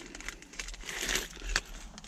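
Small clear plastic parts bag crinkling as it is handled, with a few light clicks.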